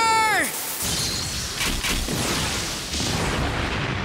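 Cartoon battle sound effect: a loud blast-like rush of noise that starts about a second in and slowly fades.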